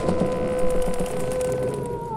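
Eerie sustained tone from a horror cartoon soundtrack: a single held note that holds steady and sags in pitch near the end, over a faint crackly hiss.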